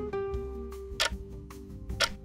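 Countdown timer music: plucked notes with a sharp tick about once a second.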